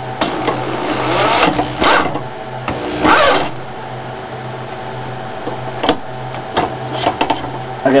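Electric hand drill spinning the cutter-wheel shaft of a converted paper shredder, a steady motor whir, with louder scraping stretches about a second in and around three seconds as wire is fed between the wheels and its insulation is cut, and a few sharp clicks near the end.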